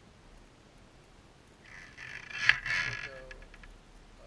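A steel wire cable scraping through the locking body of a plastic cable seal as the seal is bypassed, about a second and a half of rasping with one sharp click in the middle, then a few light ticks.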